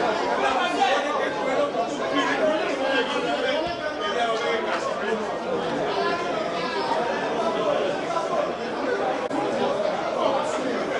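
Indistinct chatter of many spectators talking over one another near the microphone, steady throughout with no single voice standing out.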